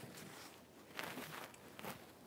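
Faint rustling of clothes and bedding as people move about, with a couple of soft clicks about a second in and near the end.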